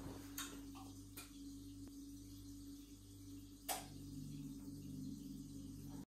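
A few faint, sharp clicks, about three, from smart-home relays and powering electronics as an automation switches the lights off and the TV, AV receiver and set-top box on. A low steady hum comes in about four seconds in.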